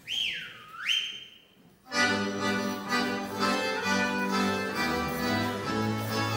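A loud whistle that dips in pitch, then swoops up and holds a high note, followed about two seconds in by a folk band with accordion, fiddle and double bass striking up a dance tune.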